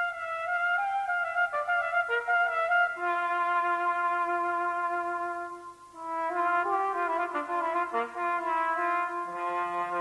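Cornet solo with brass band accompaniment, played live: long held notes and quick running passages over sustained band chords, with a short break about six seconds in and a lower band note coming in near the end.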